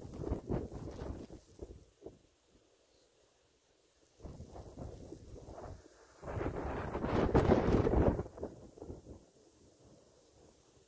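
Wind buffeting the phone's microphone in gusts during a snowstorm. A gust at the start dies away to a lull, and the strongest gust comes about six seconds in and drops off about three seconds later.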